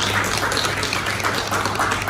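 Audience applauding, many hands clapping together without a break.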